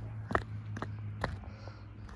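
Footsteps walking down a ramp, about two steps a second, over a steady low hum.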